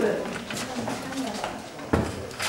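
Quiet, indistinct low voices murmuring in a small room, with a brief knock near the end.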